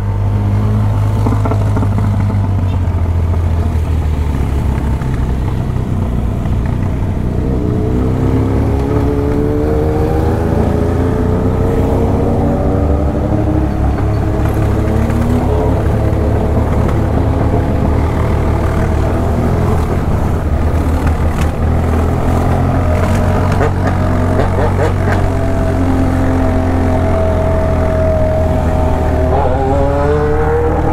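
BMW R1200 GS Adventure boxer-twin engine running steadily under a low rumble while riding slowly in traffic. From about seven seconds in, a higher engine note rises and falls as the bike picks up speed.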